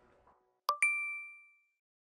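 A short ding sound effect: two quick clicks, the second ringing on as a bright tone that fades out within about a second. Before it, the last of the outro music dies away.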